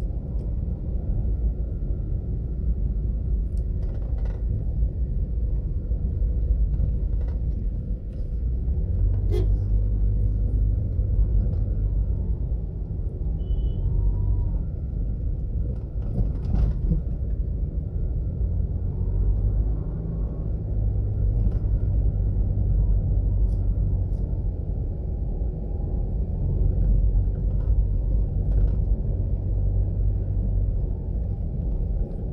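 Car driving on a city street, heard from inside: a steady low rumble of engine and road noise, with a few faint clicks and knocks along the way.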